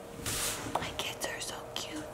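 Quiet whispering, breathy and soft.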